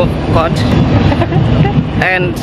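A woman's voice talking in snatches over a loud, steady low rumble.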